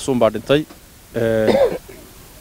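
Speech only: a man talking, with a pause of about half a second in the middle.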